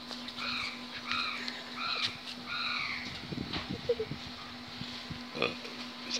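A bird calling in a quick series of about five calls, one every half second or so, over the first three seconds, with a faint steady hum underneath.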